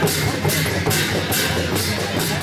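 Double-headed barrel drums (Kirat Rai dhol) beaten with sticks for the Sakela dance, a steady beat with a bright stroke about twice a second.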